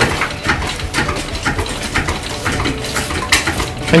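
Irregular clinks and knocks of hard objects being handled on a building site, a few sharp strikes a second over a light background hiss.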